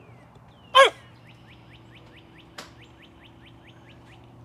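Newfoundland puppy giving a single short bark about a second in, falling sharply in pitch. Behind it runs a faint, rapid series of high chirps, about five a second.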